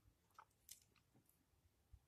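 Near silence, with a few faint clicks of plastic model-kit parts being handled.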